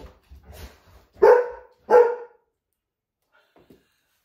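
A dog barking twice in quick succession, about a second in, the barks less than a second apart.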